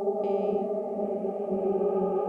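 Hologram Microcosm effects pedal in Mosaic A mode, micro-looping a sung voice and playing the loops back at normal and double speed, so the voice becomes a steady, chord-like drone with octave-up harmonies. A short, higher, more broken layer comes through near the start.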